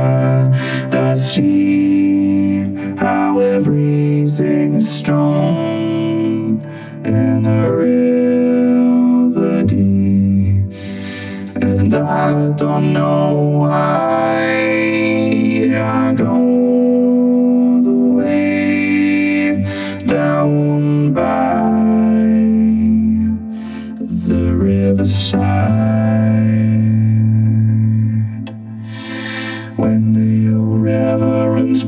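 Synthesizer keyboard music playing slow, sustained chords that change every second or two, with a few brief dips between chords.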